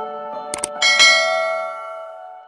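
Subscribe-button sound effect: a quick double mouse click about half a second in, then another click with a bright bell ding near the one-second mark that rings out and fades.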